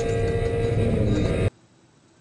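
Playback audio of an onboard race-car video: a steady drone with engine noise that cuts off suddenly about one and a half seconds in, leaving only faint hiss as playback stops.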